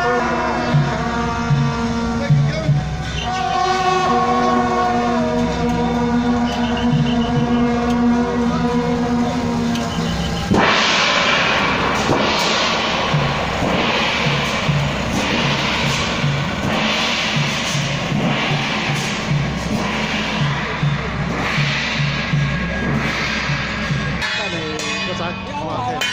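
A procession brass band holding sustained notes over a regular drum beat. About ten seconds in, loud crashing cymbals and gongs take over, struck roughly once a second, with the drum beat continuing under them.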